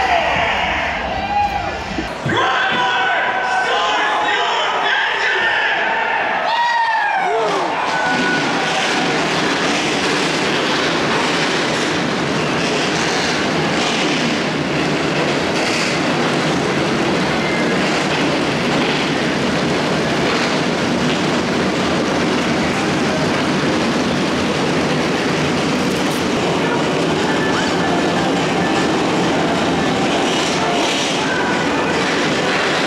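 A field of stock-car race engines running together in a loud, steady, unbroken noise that starts suddenly about seven seconds in.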